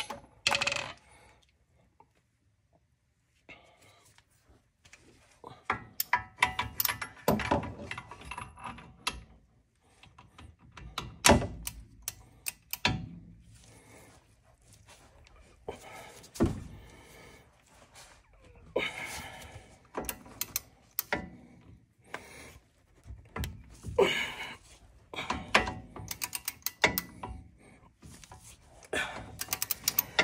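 Hand tools clanking and knocking on a car's front brake caliper: a socket ratchet and a long breaker bar being picked up and fitted onto the caliper bolts. The thunks and clatters come irregularly, with quiet gaps between.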